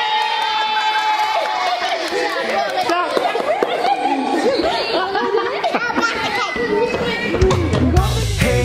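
A group of young children chattering and calling out over one another in a room. Music with a heavy bass beat comes in near the end.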